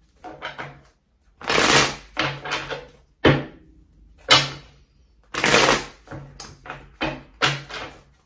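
A deck of tarot cards being shuffled by hand: a run of papery riffles and taps that come in bursts, with the longest about a second and a half in and again a little past five seconds in.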